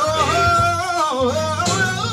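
Live gospel band music: a long, wavering melody line that slides between held notes, carried over steady bass notes.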